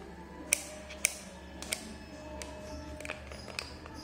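Rotary selector switch of a digital multimeter clicking through its detents as the dial is turned toward the ohm range: about six clicks, the first two the loudest.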